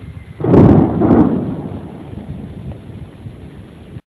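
Thunder from an overhead storm: a sudden crack about half a second in, a second peak a moment later, then a rumble that fades away over the next few seconds.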